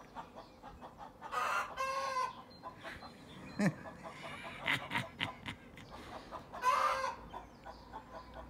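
Chickens squawking: two harsh calls close together about a second and a half in, and another near the end, over faint rapid ticking.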